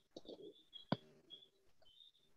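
Faint bird chirping: short high notes repeated at uneven intervals, with one sharp click about a second in.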